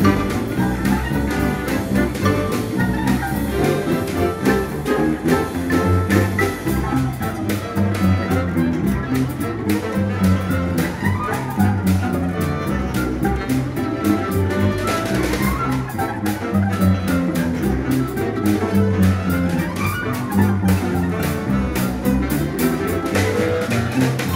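Contrabass balalaika plucking a rhythmic bass line, accompanied by an ensemble of Russian folk instruments playing a lively piece.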